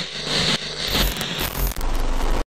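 Glitch-style intro sound effect: harsh digital static and crackling noise with low thumps underneath, about twice a second.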